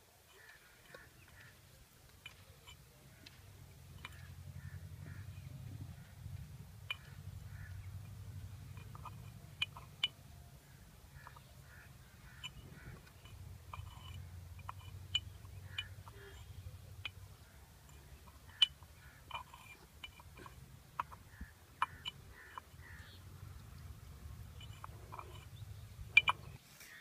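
A stick stirring crushed mahogany seeds into water in a clay pot: irregular knocks against the pot and short scrapes, over a steady low rumble.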